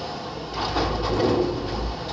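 Front-loader garbage truck's engine revving up about half a second in to drive the hydraulic lift arms. The arms are raising a dumpster over the cab to tip it into the hopper, with a deep rumble under the noise.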